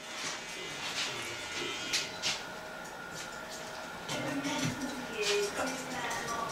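Low barbershop room sound with faint background music and murmured voices. There are two light clicks about two seconds in.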